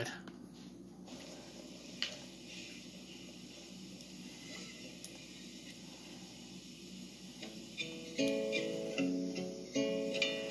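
Near silence with a couple of faint clicks, then an acoustic guitar starts, picked notes entering about eight seconds in, heard through a computer's speakers.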